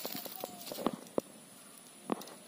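A few sharp taps and knocks on a wire-mesh pigeon cage, with the loudest two just under a second and about a second and a quarter in.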